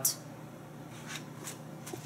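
Pages of a paperback book being leafed through: a few soft paper rustles.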